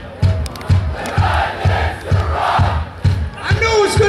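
Live heavy metal band with the drums keeping a steady beat, about three kicks a second, while the audience shouts along twice. The guitars drop out and come back in near the end.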